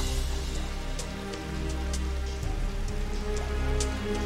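Rain falling on a car's roof and windows, with scattered drop ticks, under background music of sustained low notes that change twice.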